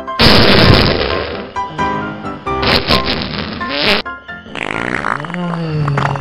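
Two loud fart sound effects, standing for the skit's diarrhea, the first right at the start and the second about halfway through, over comedic background music. Near the end comes a woman's drawn-out "uh" of relief.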